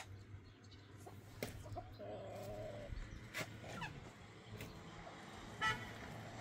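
Free-ranging chickens clucking. There is a wavering, drawn-out call lasting about a second, starting two seconds in, and a short, loud squawk near the end.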